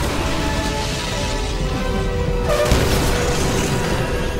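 Film score with sustained held notes over a continuous low rumble of gas-plant explosions and fire, with a loud blast about two and a half seconds in.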